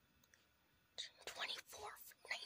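Near silence for about a second, then a breathy whispered voice starts and goes on in short broken stretches.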